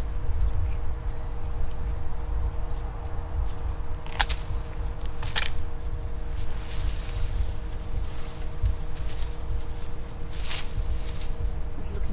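Pruning shears snipping through forsythia stems: three sharp cuts, about four seconds in, a second later, and again near the end. A steady low rumble and a faint hum run under them.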